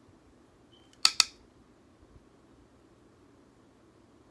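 Two sharp clicks in quick succession about a second in, from an eyeshadow palette case being handled. Otherwise faint room tone.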